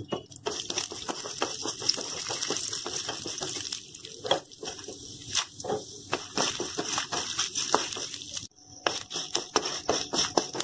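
Lentils and dried red chillies frying in hot oil in a pan. There is a steady sizzle dense with small crackles and pops, and a spatula clicks and scrapes as it stirs. The sound briefly drops away about eight and a half seconds in, then resumes.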